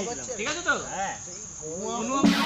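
Insects chirring steadily in the forest undergrowth, with indistinct voices in the first second.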